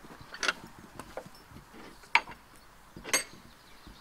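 A handful of sharp clicks and knocks about a second apart as a paddock field gate is worked open and shut, its metal latch and fittings clanking.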